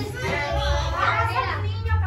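Indistinct children's voices talking over one another, with a steady low rumble underneath.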